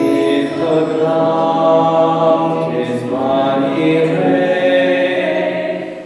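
Church choir singing a slow passage of held chords, the singing breaking off briefly at the very end.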